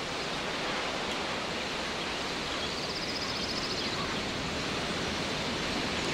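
Steady outdoor background hiss with no speech, and a faint high rapid trill passing through the middle.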